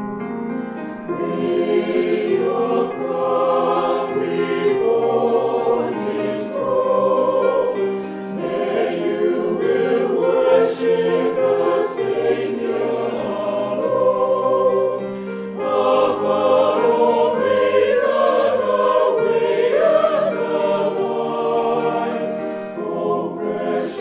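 Church choir singing a Christian anthem in harmony, with long held notes.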